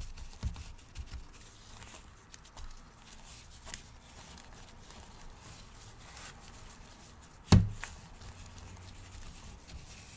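Gloved hands rubbing oil into a candle on a metal tray: quiet rubbing and handling noises with small clicks, and one sharp knock about seven and a half seconds in.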